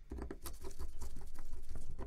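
A quick flurry of small plastic clicks and scraping as a smartphone's plastic inner cover is fitted and pressed down onto its frame by gloved fingers.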